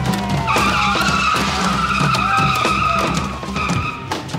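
Car tyres screeching for about three seconds, starting about half a second in, over loud background music with a beat.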